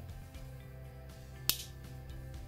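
Quiet background music, with one sharp click about one and a half seconds in as the chisel tool of a Swiss Army knife snaps shut under its backspring.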